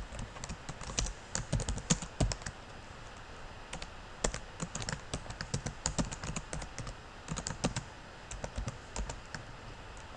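Computer keyboard typing in bursts of quick keystrokes, with short pauses between runs.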